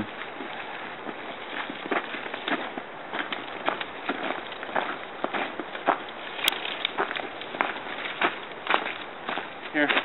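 Dry branches and brush snapping and crackling as they are handled and broken, with footsteps crunching in snow and leaf litter; a very sharp click about six and a half seconds in.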